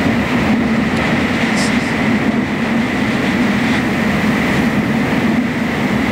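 Hurricane-force eyewall wind and driving rain beating on a truck, heard from inside the cab as a loud, unbroken rushing rumble.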